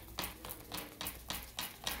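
A deck of cards being shuffled in the hands: a quick run of soft card flicks and taps, about six a second.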